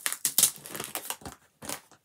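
Plastic comic-book sleeve crinkling and rustling in irregular bursts as a comic is handled and slid out of it.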